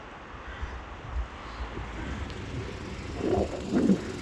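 Outdoor street ambience: a steady low rumble that slowly builds, with two brief louder sounds near the end.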